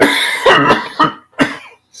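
A man coughing hard, close to a microphone, with his hand to his mouth: a fit of about five coughs in quick succession, a big one.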